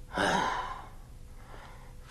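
A man's short, breathy voiced exhalation, a sigh, lasting under a second near the start.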